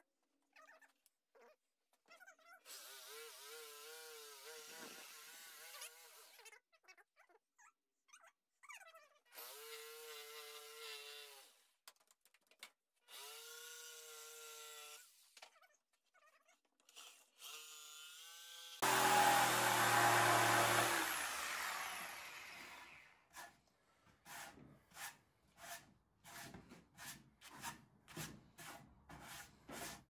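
Corded jigsaw cutting a curve in a wooden bench leg, run in several short bursts with its motor pitch wavering up and down. About two-thirds of the way in it runs much louder for a few seconds, and then comes a string of short, sharp clicks.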